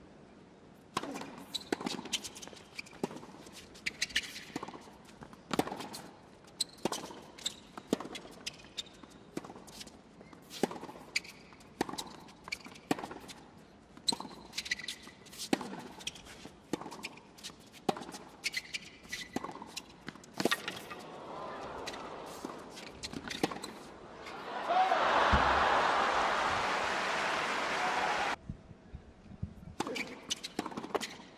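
Tennis rally: tennis balls struck by rackets and bouncing on a hard court at a steady back-and-forth pace, with a few brief shoe squeaks. Near the end the crowd applauds for about four seconds, and the applause cuts off suddenly.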